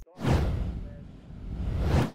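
Whoosh transition sound effect: a rush of noise that fades away, then swells back up and cuts off suddenly.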